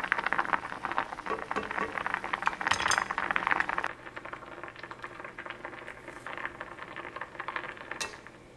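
Anchovy-kelp broth boiling hard in an enamelled pot, a dense crackling bubble. About four seconds in it drops quieter, with a utensil stirring in the pot.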